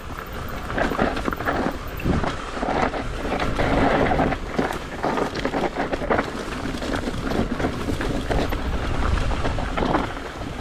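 Mountain bike rolling down a rocky dirt trail: tyres crunching over loose dirt and stones, with frequent rattles and knocks from the bike over the bumps. Wind rumbles on the microphone underneath.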